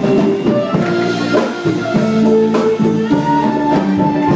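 Live band playing an instrumental passage of a song: drum kit and guitar under held melodic notes, with no singing.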